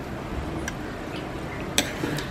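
A metal spoon scooping thick, sticky mango chunda out of a pan, with faint ticks and one sharp clink near the end.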